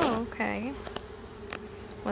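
A mass of honeybees on an open hive frame buzzing with a steady hum.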